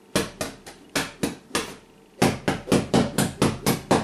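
A short, thin cane whipped from the wrist, each stroke a sharp swish ending in a smack: a few spaced strokes, then a fast run of about eight strokes at some four to five a second.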